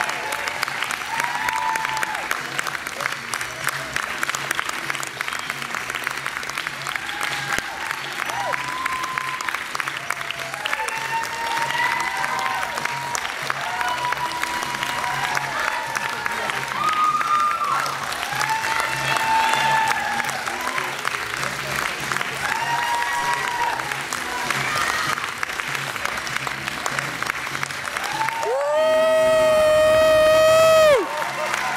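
Audience applauding, with whoops and shouts rising and falling over steady clapping. Near the end one long loud held note cuts through for about two seconds.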